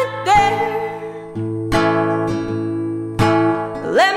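Acoustic guitar strummed and its chords left ringing between sung lines, with fresh strums about a second and a half in and again near three seconds. A woman's sung note closes at the start, and the next sung line rises in just at the end.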